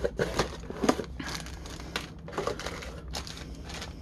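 Cardboard box inserts and plastic-bagged parts being handled during unboxing: irregular rustling and crinkling with light scrapes and taps.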